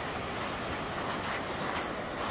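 Steady rushing noise of sea surf breaking on the shore, with wind on the microphone.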